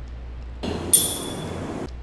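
A glass rod taps an empty glass test tube once, giving a high, clear ring that dies away over about a second.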